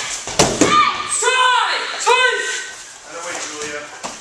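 A couple of sharp thuds of bodies moving on the mat, then two loud shouts about a second apart: kiai from students striking as they break a rear strangle in a self-defence drill.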